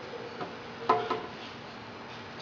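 Handling of PVC pipe held in a hinged wooden clamp block: a light click about half a second in, then a single sharper knock with a brief ring about a second in, over a steady low room hum.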